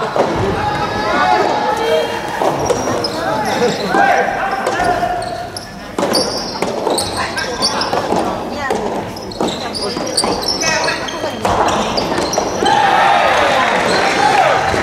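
Soft tennis rally on a wooden gym floor: the rubber ball struck by rackets and bouncing, with shouted voices. Near the end the crowd cheers as the point is won.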